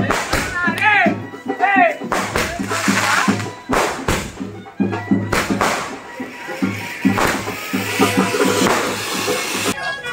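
Festival procession music with drumming and crowd voices, with sharp bangs and a dense crackling hiss from firecrackers going off in the street. It all cuts off suddenly just before the end.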